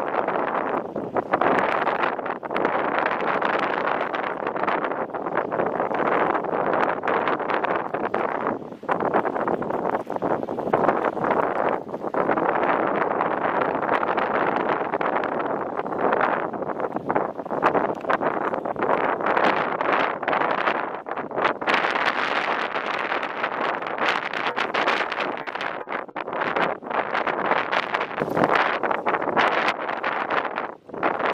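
Wind gusting across the microphone: a continuous rushing noise that swells and dips with the gusts.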